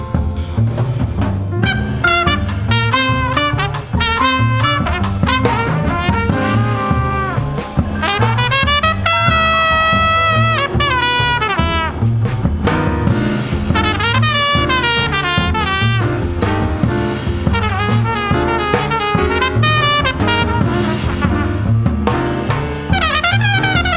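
Trumpet soloing in a live jazz quartet, with piano, upright bass and drums behind it. The trumpet plays quick runs and, about nine seconds in, holds one long note for a couple of seconds before running on.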